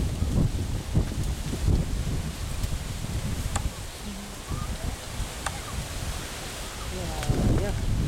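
Wind buffeting the camera microphone in uneven gusts, with people talking faintly in the background and a voice nearer the end.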